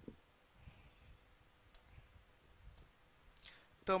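Chalk tapping and scratching on a chalkboard: a few faint ticks, roughly a second apart. A man's voice starts just before the end.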